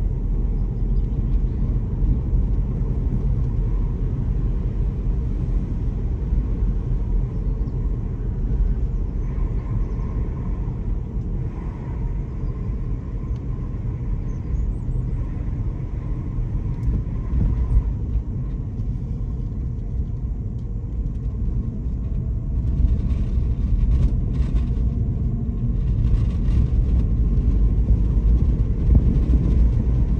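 Steady low rumble of a car driving along at road speed, heard from inside the cabin.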